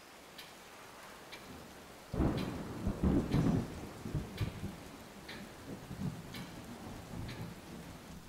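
A clock ticking about once a second, with a roll of thunder breaking about two seconds in and rumbling away over the next few seconds.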